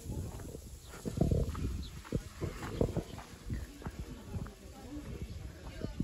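Irregular footsteps and light knocks on a village path while walking.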